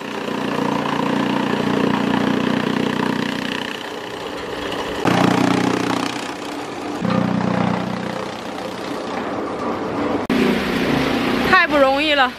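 Chaff cutter (straw chopper) running steadily and chopping corn stalks fed along its conveyor; the machine runs again after being repaired with a new, slightly smaller drive belt. Its hum shifts a few times as the load changes.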